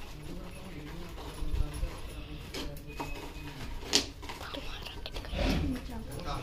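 Low, indistinct talk with a few short sharp clicks and knocks scattered through, the loudest about four seconds in.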